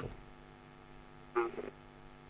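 Steady low electrical mains hum, with one brief faint sound a little past halfway.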